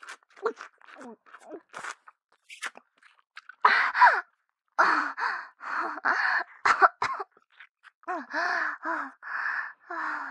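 A woman's close-miked mouth and throat sounds: short scattered mouth noises at first, then louder gagging and gasping from about three and a half seconds in, and breathy moans near the end.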